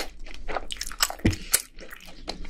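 Close-miked chewing of a mouthful of crispy fried food: a quick run of crunches and crackles that thins out near the end.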